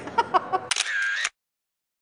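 Camera shutter sound as a photo booth takes a picture: a couple of sharp clicks, then a short snap with a whir, cutting off suddenly into silence.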